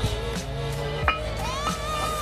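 Background music: sustained low notes with a melodic line that glides up about a second and a half in.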